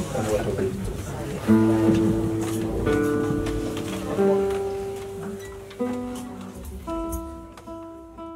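Acoustic guitar playing slow chords, a new chord struck about every second and a half and left to ring out and fade.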